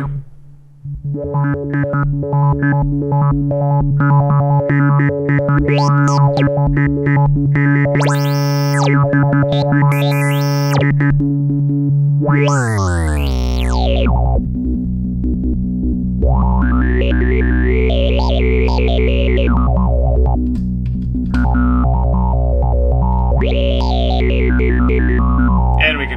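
Modular synthesizer drone through a QPAS filter. Its filter frequency is modulated by random voltage, a pressure voltage and an audio-rate sine wave, mixed in a Channel Saver module, so the brightness of the tone sweeps up and down. About halfway through, the pitch glides down to a lower drone.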